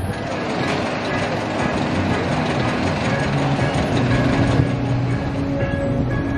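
A water coaster's vertical lift machinery running: a steady motor hum under a rapid rattle of mechanical clicks.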